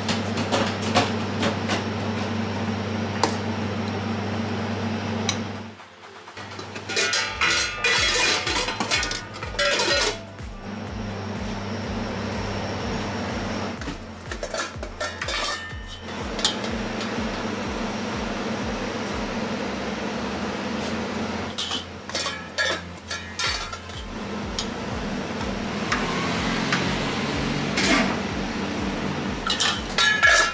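Ceramic bowls, spoons and metal kitchenware clinking and clattering as they are handled, in several bursts over a steady low hum.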